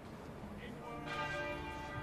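A church bell tolls a single faint stroke about a second in, its ring held on afterwards.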